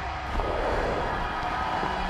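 Skis scraping to a stop on hard snow, with crowd noise behind.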